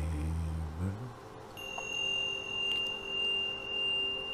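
A drawn-out, intoned "Amen" dies away about a second in. Then a struck metal meditation chime rings on one sustained high tone over a faint lower hum, swelling and fading slowly as it sounds on.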